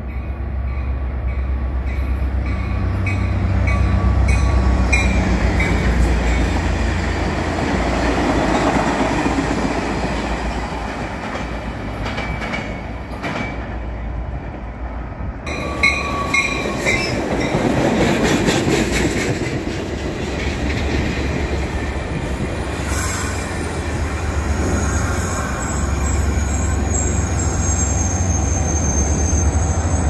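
Caltrain passenger train of gallery bilevel cars rolling along the platform, with its EMD F40PH diesel locomotive pushing at the rear: a steady low engine hum under the rumble of wheels on rail. A thin high squeal sets in near the end.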